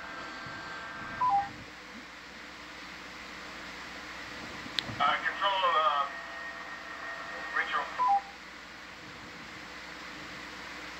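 A short two-note electronic beep, falling in pitch, sounds about a second in and again near the end. Between the two beeps a brief burst of voice comes over the comms, just after a sharp click. A faint steady hum runs underneath.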